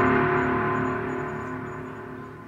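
The ringing tail of a gong-like dramatic sound-effect sting, many tones sounding together and fading steadily.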